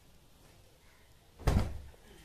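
A single heavy thump of something being shut, about one and a half seconds in, with a short low boom after it.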